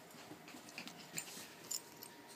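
Pembroke Welsh Corgi puppy scampering and pouncing on carpet, with faint small dog noises and a few sharp taps, the loudest a little past halfway.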